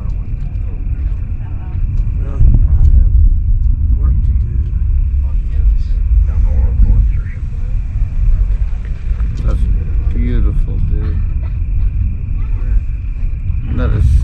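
A loud, steady low rumble that grows louder about two and a half seconds in, with faint voices talking underneath.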